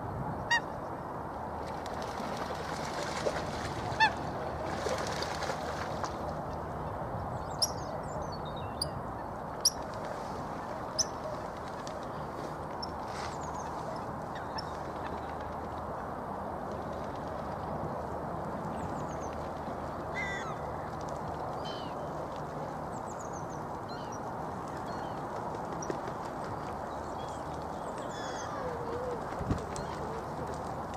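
Waterbirds calling: several short, sharp calls spaced a few seconds apart, mostly in the first half, over a steady background noise, with faint high chirps of small birds.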